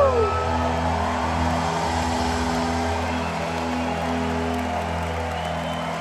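A live rock band holding its final chord, low sustained notes ringing steadily as the song ends, while the audience cheers and whoops.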